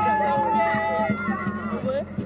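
A crowd's voices shouting and calling out over each other, one voice holding a long call, over a regular low beat in the background.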